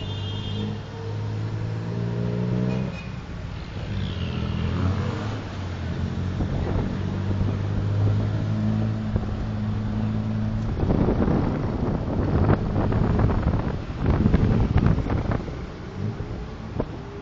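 Tuk-tuk's small engine running under way, revving up and then dropping as it shifts gear about three seconds in, then pulling steadily. From about eleven seconds in, gusts of wind rush over the microphone.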